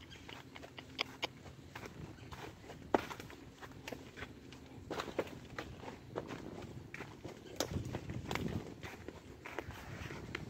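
A horse walking through dry fallen leaves: each hoof crunches and rustles the leaf litter, giving an irregular crackle. There is one sharper snap about three seconds in.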